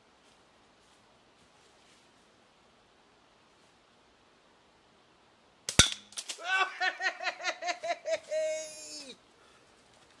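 Near silence, then a little over halfway through a single sharp crack from a catapult shot, followed at once by a man whooping and cheering for about three seconds.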